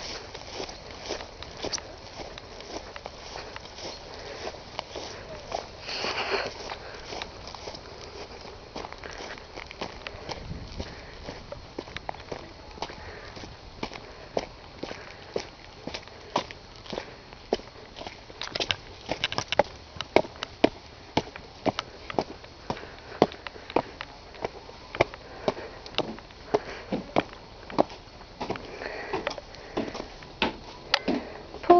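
Footsteps of a person walking uphill: soft steps on a field path at first, then from about halfway sharper, louder steps on stone steps and paving at about two a second. There is a single sniff about six seconds in.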